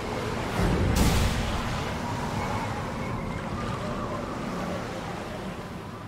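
Show bumper sound design: a swish about a second in, then a steady wash of ocean surf with faint held tones under it, fading out near the end.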